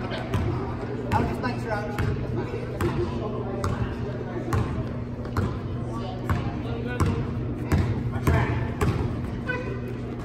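A basketball is dribbled on a gym court, with steady bounces a little under a second apart, over background voices.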